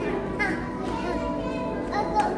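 Children's voices in a large indoor hall, with a short high-pitched child's call about half a second in, over steady background music.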